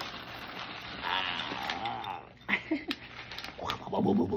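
Dry Quaker cereal pouring out of a plastic bag liner into a glass bowl: the cereal rattles and the bag rustles. A man's wordless voice sounds over it in the middle.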